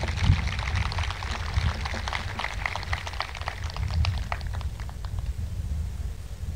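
Outdoor crowd applauding, a dense patter of clapping that thins out and stops about five seconds in, over a low rumble.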